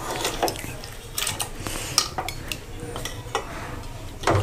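Metal spatula stirring a watery meat curry in a metal cooking pot, with scattered clinks and scrapes of the spatula against the pot.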